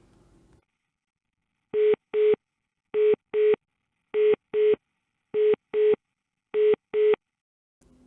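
Analog telephone busy tone (type 3 cadence): a single steady tone sounding in pairs of short beeps, five pairs about 1.2 seconds apart, starting nearly two seconds in. It is the signal a PSTN line gives when the line is already in use.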